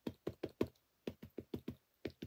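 A VersaFine Clair ink pad dabbed repeatedly onto a stamp on a clear acrylic block, inking it. It makes a quick series of light plastic taps, with a short break about halfway through.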